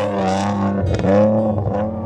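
A Jeep Wrangler's engine revving under load as it drives up through soft sand dunes, its note rising and falling.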